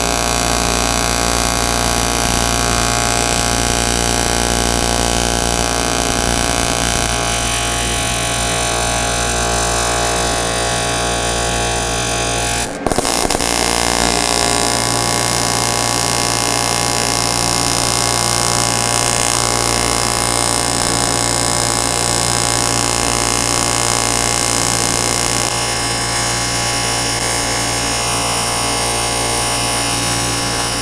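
AC TIG welding arc on thin aluminum from an Everlast PowerTIG 255 EXT set to 80 amps and 60 Hz AC frequency: a steady, loud buzz. It breaks off for a moment about halfway through and starts again. The first run is in sine wave and the second in triangular wave.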